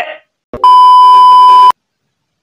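A loud, steady electronic bleep tone, held for about a second and cut off abruptly, of the kind dubbed over a word to censor it.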